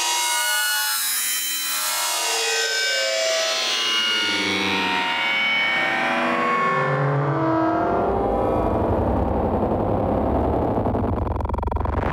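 Audio loop run through a granular synthesizer plugin (Unfiltered Audio Silo), cut into short pitched grains that sweep up and down in pitch as the grain pitch and rate settings are changed. From about eight seconds in, a low, rough, grainy buzz takes over underneath.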